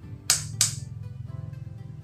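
Two sharp clicks a third of a second apart from the rotary range selector switch of a Brother HD-390C analog multimeter being turned from X1 toward X1K, over steady background music.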